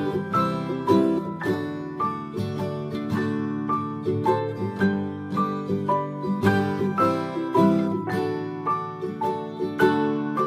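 Instrumental lullaby music: a melody of separate plucked-string notes, each starting sharply and dying away, over held low notes.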